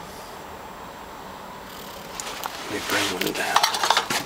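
Old metal tins being handled: a string of light clinks, knocks and rattles from about halfway through, getting busier toward the end.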